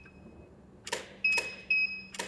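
Two sharp camera shutter clicks with the studio strobe firing, about a second in and half a second apart, followed by steady high beeps: the Profoto D2 flash signalling it has recycled and is ready.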